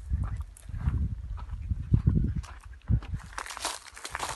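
Footsteps crunching over dry straw and dirt, uneven and irregular, with low thumps from the moving handheld microphone.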